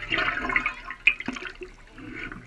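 River water rushing and sloshing around a shovel blade as it is plunged into the shallows, with a sharp knock about a second in.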